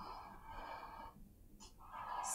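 A string telephone's paper cup sounding a faint steady tone as a hand works its taut string, fading out about a second in.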